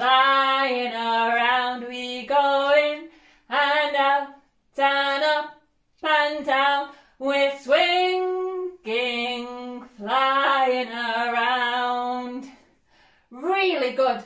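A woman singing a slow, unaccompanied children's action song, in sung phrases with short pauses between them.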